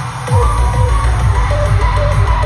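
Live concert music over a venue sound system, heard from the audience: loud bass and drums come in about a third of a second in, with a melody line above.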